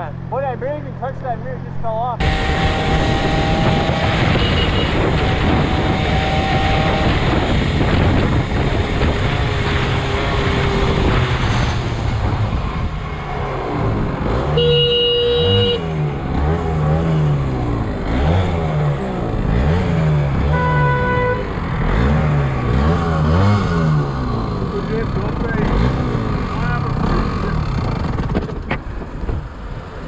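Motorcycle riding in traffic, recorded on a helmet camera: wind rushes over the microphone and the engine runs underneath, its revs rising and falling several times in the second half. A horn gives one flat, held blast of over a second about halfway through, then a shorter one about six seconds later.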